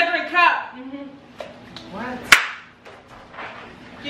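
Voices and a couple of light taps, then one loud, sharp smack a little past halfway through.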